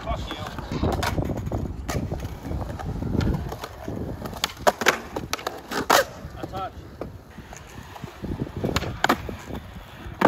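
Skateboard urethane wheels rolling on concrete, with sharp clacks of the board popping and landing at several points. The loudest clacks come at about five seconds, six seconds and nine seconds in.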